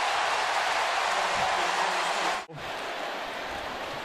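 Steady crowd noise from a large stadium crowd at a football game. It cuts out abruptly about two and a half seconds in and comes back quieter.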